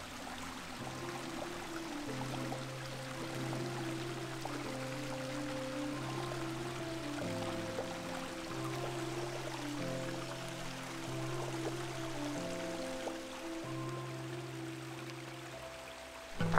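Background music of slow, held chords over a bass note that changes every second or so, with the faint rush of a shallow rocky stream underneath.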